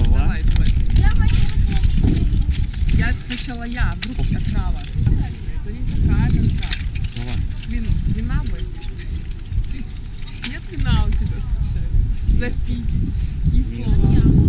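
Wind rumbling on the microphone, with voices and short exclamations over it.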